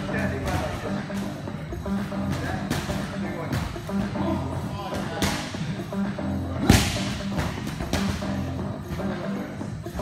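Strikes landing on hand-held striking pads, one after another, the loudest about two-thirds of the way in, over background music with a steady beat.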